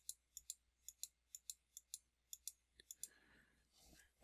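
Computer mouse button clicking repeatedly, about a dozen faint, quick clicks at roughly four a second, stepping a font-size arrow up one point at a time.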